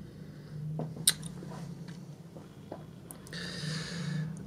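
A few sharp clicks and light rustling over a low steady hum, the loudest click about a second in, then a breath drawn in near the end.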